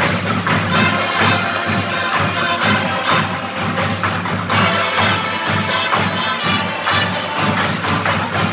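Marching band playing live: brass with drums and percussion keeping a steady beat.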